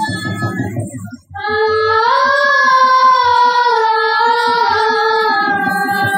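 Sambalpuri folk song: a high singing voice holds long, slowly bending notes over a quick, steady percussion beat. The music drops out briefly about a second in, then a new phrase begins.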